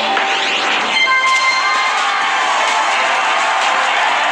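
Game-show sound effects from the Deal or No Deal arcade game in an animation: a steady, noisy crowd-like cheer, with a bright ringing chime about a second in.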